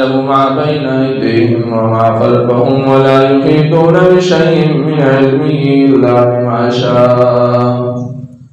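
A man's voice chanting Quranic Arabic in a melodic recitation style: one long, drawn-out phrase that rises and falls in pitch.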